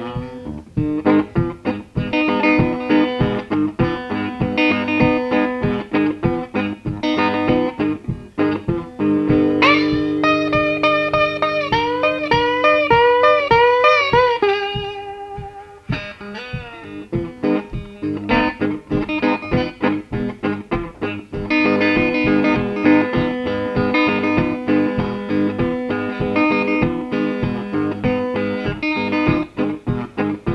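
Electric blues guitar playing an instrumental break: a rhythmic picked riff over a repeated low note, and from about ten to fifteen seconds in a run of high notes that bend up and down.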